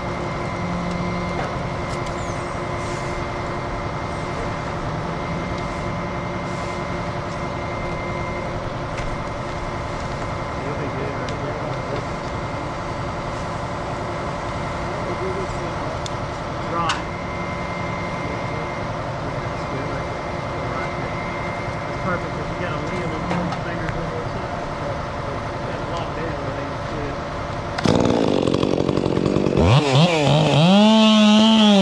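Machinery runs steadily with a few held tones. Near the end a chainsaw revs up sharply and its pitch rises as it starts cutting into the tree trunk.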